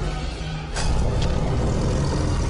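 Film soundtrack: dramatic score music over a heavy low rumble, broken by a sharp crack about three quarters of a second in, followed by a couple of fainter ticks.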